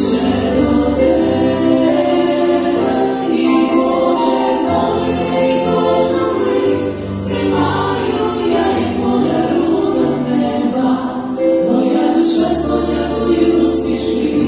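A women's vocal ensemble singing a Christian worship song in harmony through microphones, with piano accompaniment.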